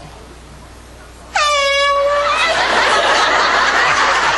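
A handheld air horn blasts once, suddenly, about a second and a half in, sounded close behind a man's head as a prank scare. The short, loud blare gives way to a loud, even rush of noise.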